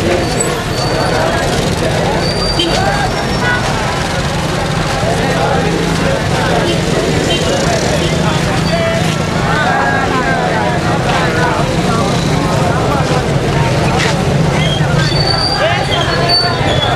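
A marching crowd with many voices talking and calling out at once, none clearly heard. A steady low motor hum runs underneath.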